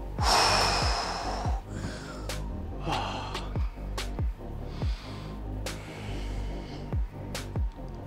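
A man breathing hard while recovering between exercise sets, with a loud exhale just after the start and quieter breaths later, over background music with a steady beat.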